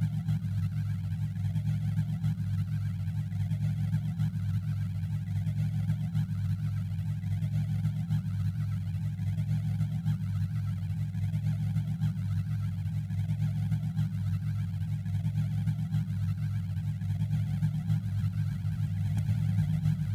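Experimental noise-music soundtrack: a dense, steady low electronic hum with a faint grainy hiss above it.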